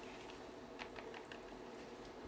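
Faint computer keyboard keystrokes, a handful of light, scattered clicks, as typed text is being deleted.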